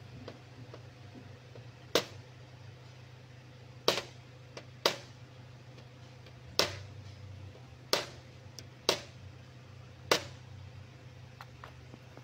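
Seven sharp metal-on-metal taps, irregularly spaced a second or two apart and each ringing briefly, as a car radiator's header-plate tabs are crimped back down over the tank with a steel tool. A steady low hum runs underneath.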